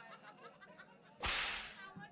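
Low background voices, then about a second in a single sharp, loud crack that fades away within about half a second.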